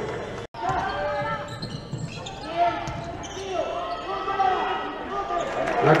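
Basketball game play in a sports hall: a ball bouncing on the court, with players' voices calling out.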